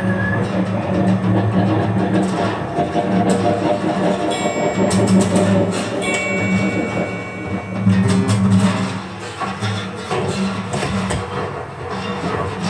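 Improvised noise music from an electric guitar and an acoustic bass guitar, their strings scraped and struck with sticks. A low drone swells and fades several times. A cluster of high metallic ringing tones with sharp clicks comes a few seconds in.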